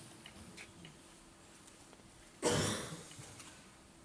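A single short cough, sudden and then fading over about a second in the room's reverberation, about two and a half seconds in.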